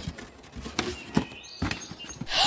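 A large cardboard box being opened: a few light, scattered knocks as the flaps are pushed open.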